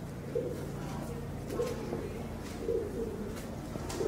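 A pigeon cooing: three short low coos about a second apart, over a steady low hum.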